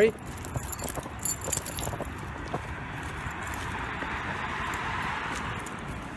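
A dog's collar and leash hardware jingling with light footsteps on a concrete sidewalk, then the noise of a passing car that swells and fades over a few seconds.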